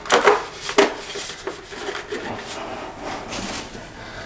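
Plastic Iron Man toy helmet being pulled on over a head and settled into place: rubbing and scraping of the shell, with several sharp clicks and knocks.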